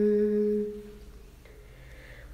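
A young woman singing unaccompanied holds the closing note of a sung line with her lips closed, like a hum, on the final 'm' of 'moham'. The note fades out under a second in, leaving a short quiet breath-pause before the next line.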